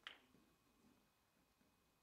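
A single sharp click of snooker balls striking once at the start, then faint low rolling as the cue ball runs on across the cloth.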